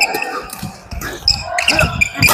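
Badminton rally on a wooden gym floor: rackets striking the shuttlecock, sneakers squeaking briefly near the start and near the end, and footsteps thudding on the boards.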